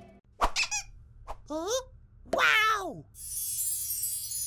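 Cartoon sound effects: a short click, then three bursts of high, squeaky, warbling cries that slide down in pitch. Near the end a high shimmering sparkle sound starts.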